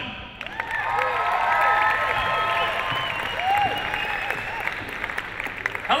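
Audience applauding and cheering, with shouts and whistles, swelling about half a second in and easing off toward the end.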